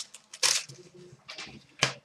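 Trading cards being handled and slid through by hand: a few brief, papery slides and flicks with quiet gaps between them.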